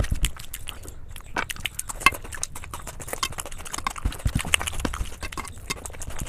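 Close-miked eating by hand: fingers squishing and mixing soft food on a steel plate, and wet mouth clicks while chewing, making a dense run of small sharp clicks and squelches with soft low thumps.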